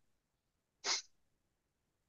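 A single short, sharp breath through the nose or mouth close to the microphone, about a second in.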